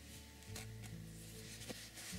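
Quiet handling sounds: faint rustles and a couple of light ticks as embroidery thread and a crocheted yarn toy are handled, over a low steady hum.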